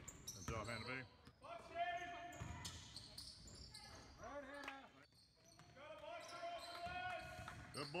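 Basketball game on a hardwood gym court: the ball bouncing, with high-pitched shouts and calls from players and spectators. A spectator calls "Good" at the very end.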